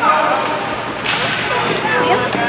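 Young children's voices chattering and calling in an echoing ice rink. About a second in there is a sudden sharp swish that fades over about half a second.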